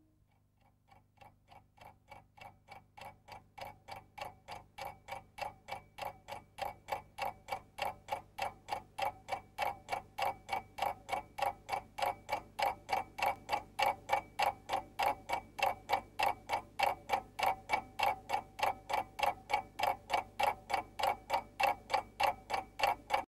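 Clock-like ticking, about three to four ticks a second, fading in over the first several seconds and then holding steady.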